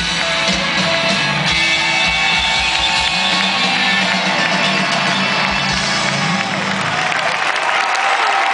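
Live rock band with electric guitars and drum kit playing the closing bars of a rock-and-roll song; the bass and drums stop about seven seconds in, and crowd noise carries on after.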